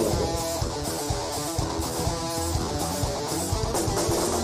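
Electric guitar playing a riff that repeats about every two seconds, with bass underneath, from a hard-rock band's live recording.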